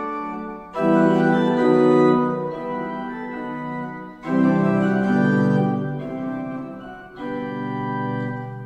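Pipe organ playing a toccata: full sustained chords come in three times, about a second in, past the middle and near the end, each dying away before the next.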